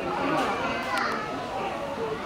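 Overlapping voices of children and adults chattering and calling at a distance, with a couple of short sharp clicks about a second in.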